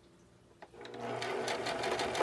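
Simplicity domestic sewing machine starting up and stitching, building up to speed within about half a second and then running on in fast, even needle strokes.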